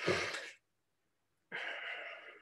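A man's breathy exhalations, two short ones: one at the very start and another about a second and a half in, with silence between.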